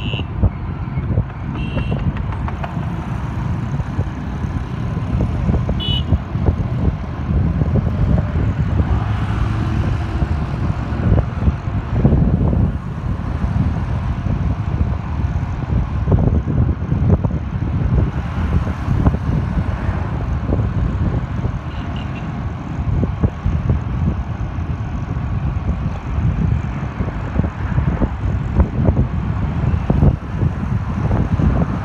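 Traffic and wind noise from riding through city traffic: a constant rough rumble of engine and wind buffeting the microphone. A few short high beeps, typical of vehicle horns, come near the start, about six seconds in and past the twenty-second mark.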